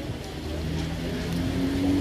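A motor vehicle's engine running, its steady low hum rising slightly in pitch in the second half.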